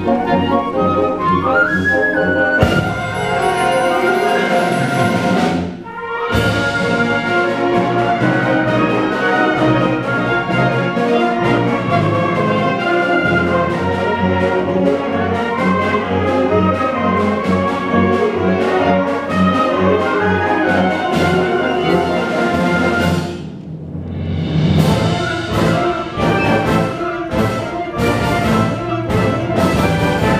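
School concert wind band of clarinets, saxophones, brass and percussion playing a full-band passage. There is a loud swell a few seconds in, a brief break near six seconds, another short drop a little before the end, and then a run of strongly accented rhythmic hits.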